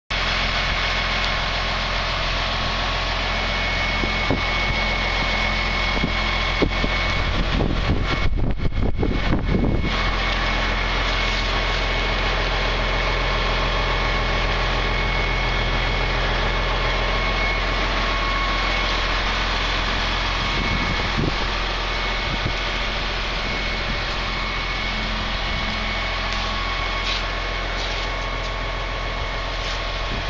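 An engine idling steadily, with a low hum and a faint high whine. About eight seconds in, wind buffets the microphone for a couple of seconds.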